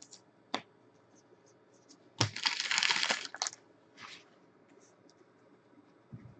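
Foil trading-card pack wrapper crinkling in the hands: a light click, then about two seconds in a loud crackle lasting about a second, and a softer one shortly after.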